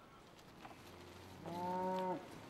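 A Highland cow lowing once near the end, a short moo of under a second that dips in pitch as it ends.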